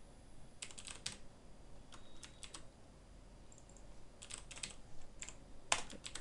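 Faint computer keyboard keystrokes as a word is typed: short runs of a few key clicks separated by pauses, with single clicks near the end.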